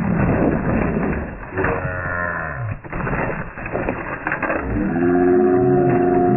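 A cow mooing, dubbed in as a comic sound effect: a low call falling in pitch a little after two seconds in. Steady organ-like music begins about five seconds in.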